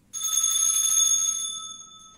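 A small bell struck once, its high ringing fading away over about two seconds: the kind of bell rung to signal that Mass is beginning.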